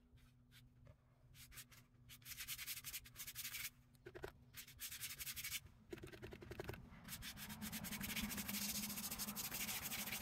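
Paintbrush scrubbing a gouache wash back and forth across a watercolor postcard: runs of quick, scratchy strokes, several a second, with brief pauses between runs.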